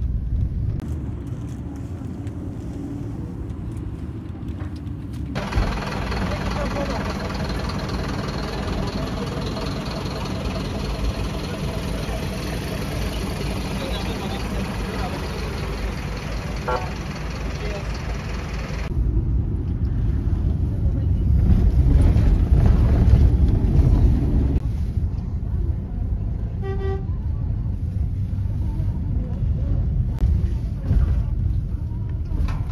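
Low engine and road rumble of a moving vehicle, changing character several times, with background voices in the middle stretch and a short car horn toot near the end.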